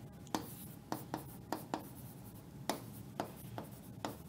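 A pen writing words by hand: faint, irregular light taps and short strokes.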